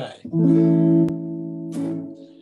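Acoustic guitar strummed once in an A chord, the strings ringing on and slowly fading.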